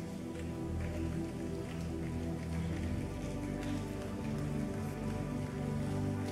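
Soft background music of slow sustained chords, with a faint rustle and shuffle of a large congregation getting to its feet.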